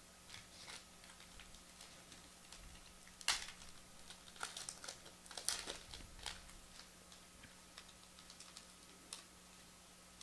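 Faint handling of football trading cards and a torn pack wrapper: scattered small clicks and crinkles, loudest about three and five and a half seconds in.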